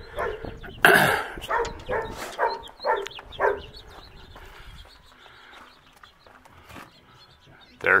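A dog barking, a short string of about five barks at roughly two a second, along with a man's single cough; the sound dies down to quiet outdoor background in the second half.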